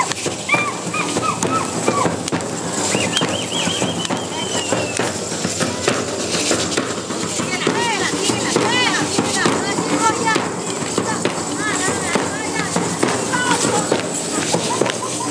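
Matachines dancers' hand rattles and cane-tube fringed skirts clattering in a rapid, steady rhythm as they dance, with stamping steps.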